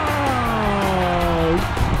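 A man's long, drawn-out "ohhh" exclamation, sliding steadily down in pitch and stopping shortly before the end, over background music.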